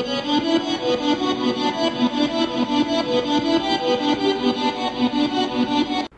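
Electric guitar motif played back as a software instrument, with sustained notes pulsing in and out in a quick, even wobble from an LFO.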